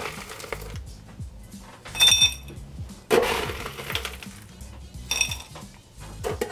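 Crushed ice being scooped from an ice bucket and dropped into a rocks glass: a rustling crunch of ice about three seconds in, between two short ringing clinks, about two and about five seconds in.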